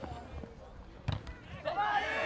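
A football struck with a dull thud about a second in, with a few lighter knocks after it. Players' voices shout near the end.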